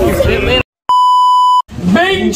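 A steady, mid-pitched electronic beep lasting under a second, edited in with dead silence on either side of it.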